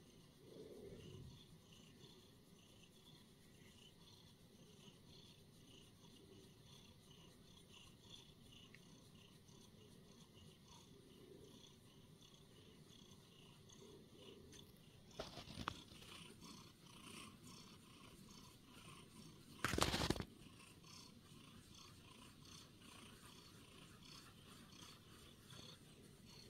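A domestic cat purring softly and steadily while being stroked. A few short rubbing noises come a little past the middle, and a brief, louder one follows about twenty seconds in.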